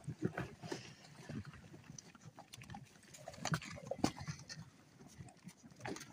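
Bison at close range making short, low grunts at irregular intervals, mixed with brief crunching and clicking sounds as they feed.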